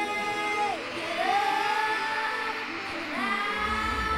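Live pop concert music: a female voice holds long sung notes that slide up between pitches over the band. The bass drops out, then comes back in about three and a half seconds in.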